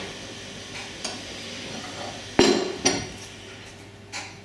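Steel tooling being handled at a hand arbor press: a small knock, then two sharp metallic clinks about half a second apart past the middle, the first ringing on briefly.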